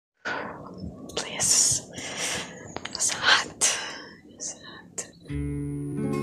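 A woman whispering in short breathy phrases, then acoustic guitar music starts about five seconds in.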